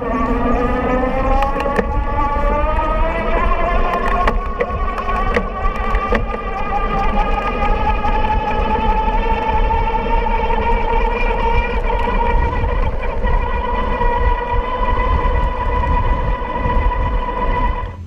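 A 48-volt, 350-watt geared rear hub motor whining under pedal assist at speed. The whine rises in pitch over the first few seconds as the bike accelerates, then holds steady. Underneath is a heavy rumble of wind on the microphone, with a couple of brief knocks from bumps in the road.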